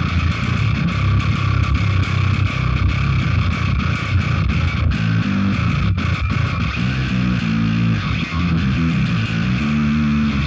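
Electric bass guitar played with a pick through a Line 6 Helix high-gain bass preset, its Obsidian 7000 distortion switched on: fast, gritty, distorted low riffing. From about halfway through the notes step up and down higher on the neck.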